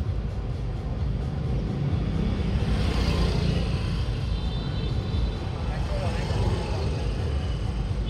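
Hanoi street traffic: a steady rumble of passing vehicles, swelling about three seconds in as one goes by closer.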